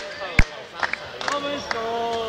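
Basketball dribbled on a hardwood court, about two and a half bounces a second; the dribbling stops about half a second in. Voices in the hall follow, with a drawn-out call near the end.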